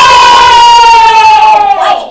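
Children screaming a long, high cheer together, very loud, its pitch sliding slowly down before it breaks off near the end.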